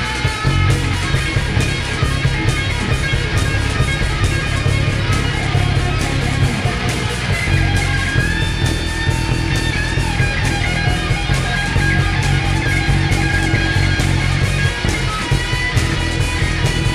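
Heavy metal band playing live: a distorted Les Paul-style electric guitar plays a lead line with long held notes over pounding drums and heavy bass.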